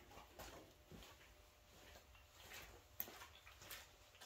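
Near silence with a few faint, irregular taps, most likely footsteps on a concrete shop floor; one sharper click about three seconds in.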